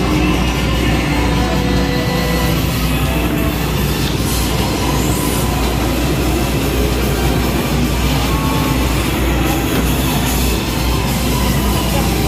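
Loud, steady arcade noise: music mixed with the rumbling engine sound of motorcycle racing arcade machines.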